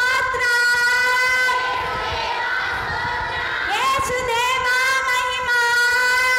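A woman's voice singing long, high, held notes into a microphone in fervent praise worship, with a pitch slide up into a new note about four seconds in.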